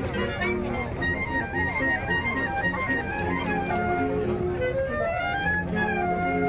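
Band music from wind instruments: a melody of held notes stepping up and down, with crowd chatter beneath.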